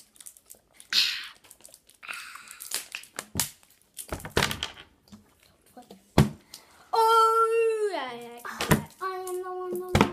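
Children drinking from plastic water bottles, with light crinkling of the bottles and several sharp knocks as they are handled and set on the table. In the second half a child's voice holds a long steady note that drops in pitch, then a second, lower held note.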